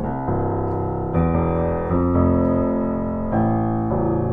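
C. Bechstein A208 grand piano played in the bass register: low, ringing chords held and sustained, with a new chord struck about once a second.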